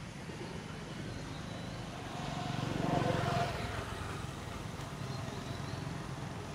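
A vehicle passing by, its sound building to a peak about three seconds in and then fading, over steady outdoor background noise.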